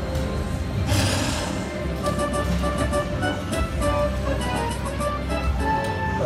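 Aristocrat Lightning Link slot machine sounding its Major jackpot win: a burst of noise about a second in as the lightning effect strikes the Major symbol, then a run of chiming electronic notes and a rhythmic ticking over a low steady bass, the jackpot celebration.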